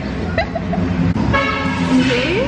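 A vehicle horn sounds once, a steady held honk lasting under a second, starting about a second and a half in.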